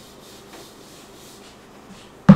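Whiteboard eraser rubbing across a whiteboard in repeated back-and-forth strokes, a soft scuffing hiss with each stroke.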